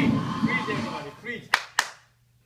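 Two sharp hand claps, about a quarter second apart, near the end.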